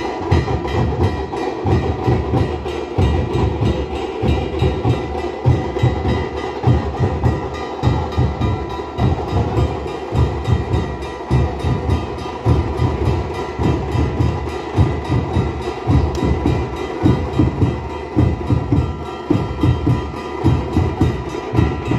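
Dhol barrel drums beaten in a fast, driving rhythm, with heavy low strokes several times a second.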